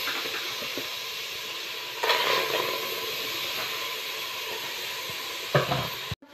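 Raw meat pieces being put into an aluminium pressure cooker over a steady hiss, with a louder knock against the pot near the end.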